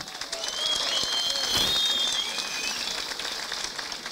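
An audience applauding, with a thin high whistling tone over the clapping from about half a second in until nearly three seconds in.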